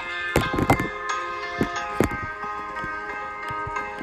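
Music playing back: the slow opening of a pop ballad, with sustained chords and no vocals yet. Several short knocks and taps sound over it, loudest in the first second or two.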